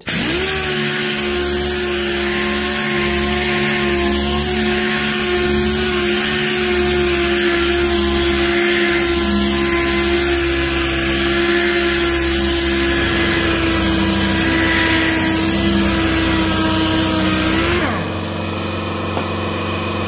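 Pneumatic random-orbital sander with a 500 grade disc running steadily against car paint, a steady whine that comes up to speed at the start. About 18 seconds in the tone stops and a quieter steady sound takes over.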